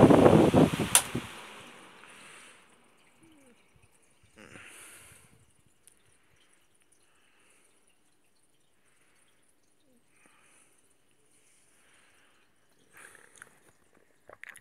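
Omega pedestal fan on its top speed, its airflow rushing loudly over the microphone. A click comes about a second in, and the rush fades away over the next few seconds as the fan is turned off and the blades spin down, leaving near silence.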